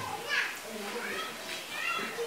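Faint chatter of young children: short, high voices rising and falling.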